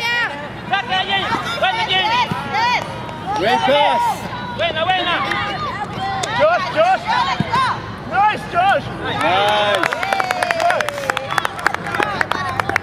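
Overlapping shouts and calls from sideline spectators and players during a youth soccer game, many short raised voices cutting across each other. A quick run of sharp clicks starts near the end.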